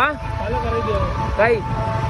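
Steady low rumble of a two-wheeler being ridden through traffic, under short shouted words right at the start and about one and a half seconds in.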